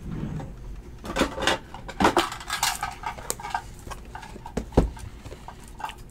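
Sealed cardboard trading-card boxes being lifted and shifted off a stack by hand: irregular knocks, scrapes and rustles, with a sharp knock just before the end. A few short pitched sounds are heard in the background.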